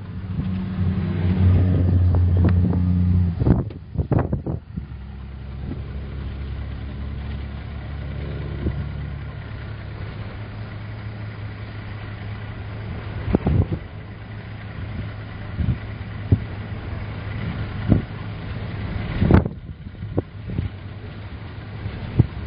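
Car engine running while driving, heard from inside the cabin, with strong wind buffeting the car. The engine is louder for the first few seconds, then settles; a few sharp knocks come after the middle and a couple of seconds before the end.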